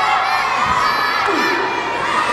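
Wrestling crowd shouting and cheering without pause, many high-pitched voices among them, children's included.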